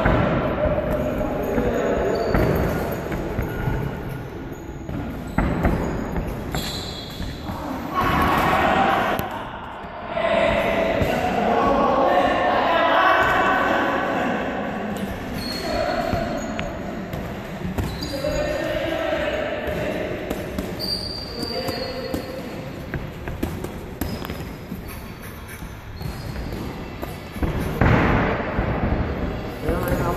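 Boxing gloves landing in sparring: irregular padded thuds of punches on gloves, arms and body, with shoes scuffing and stepping on the ring canvas, echoing in a large gym hall. Voices are heard behind them.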